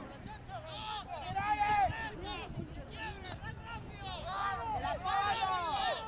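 Several voices shouting and calling over one another, rugby spectators and players yelling during open play. The shouting swells about two seconds in and again near the end.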